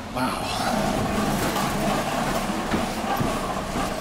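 A steady rushing noise with a low rumble underneath and a few faint knocks.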